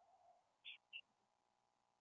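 Near silence on a webinar audio line, with two faint, brief high-pitched blips about a second in.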